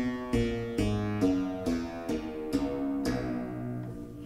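Fretted clavichord, a 1978 Christopher Clarke copy, playing a slow run of low notes, about two a second, each note sounding and fading before the next, demonstrating the short-octave layout of its bass keys.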